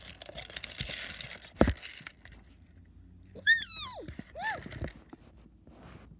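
Popcorn kernels rattling and rustling in a plastic bowl, with one sharp knock about one and a half seconds in. Past the middle, a high-pitched voice gives two short calls, the first gliding down steeply in pitch.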